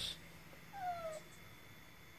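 Domestic cat giving one short meow that falls in pitch, about a second in.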